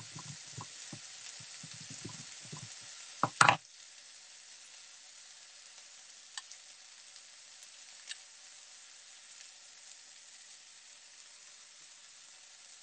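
Chicken and plum slices sizzling in a frying pan throughout, with a quick run of knife taps on a wooden chopping board in the first three seconds as the end is cut off a garlic clove. A single loud clack about three and a half seconds in is the loudest sound, after which only the steady sizzle and a couple of faint clicks remain.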